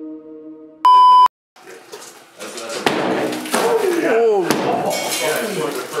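A loud single-pitch bleep about a second in, cut off after under half a second. After a brief gap, sledgehammer blows land on a brick-and-stucco pillar several times, with people shouting and laughing over them.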